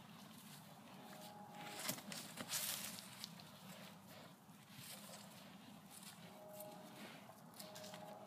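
Cattle close by, shuffling on the grass and breathing, with a couple of short breathy puffs about two to three seconds in. Faint overall.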